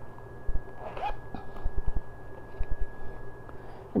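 Handling noise as a small zippered coated-canvas pouch is unzipped and opened, with several soft low thumps and faint rustling.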